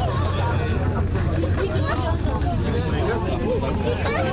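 Several passengers talking indistinctly inside a moving gondola cabin, over a steady low rumble from the cabin riding its cable.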